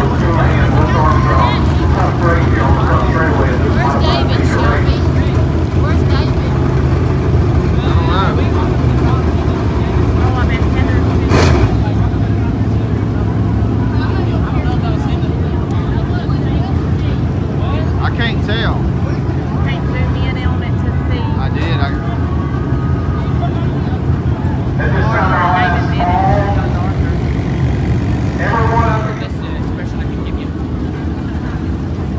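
Steady low engine drone from vehicles idling on a stopped dirt track, under indistinct crowd chatter, with one sharp knock about eleven seconds in. The drone drops away shortly before the end.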